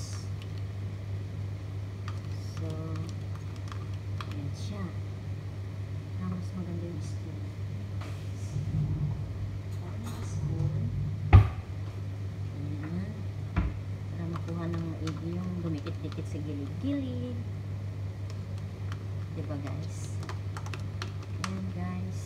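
Light clicks and taps of a spoon working soft white cheese out of a plastic tub into a frying pan, with a sharp knock about eleven seconds in, the loudest sound, and a smaller one two seconds later. Under it run a steady low hum and faint voices.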